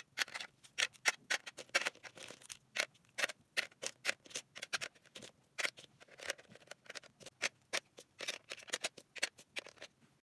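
Plastic highlighter and marker pens set down one after another into a clear acrylic drawer: a quick, irregular run of light plastic clicks and taps, about five a second.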